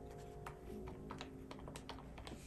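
Keys of a desktop calculator being pressed in a quick, irregular run of several light clicks, over soft piano music.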